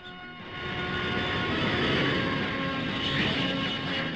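Jet engine noise of a Royal Navy F-4 Phantom, a steady rush with a thin whine. It swells up about half a second in and then holds.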